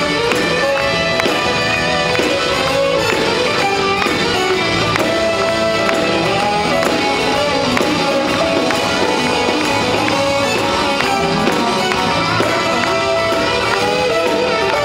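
Live band playing an instrumental passage: drum kit and electric bass with a brass section of trumpets, trombone and saxophone. The music is loud and steady, with a regular beat and held horn notes.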